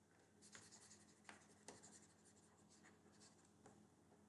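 Very faint stylus strokes on a tablet screen: a few soft taps and light scratching as a drawing is shaded in, over a low steady hum.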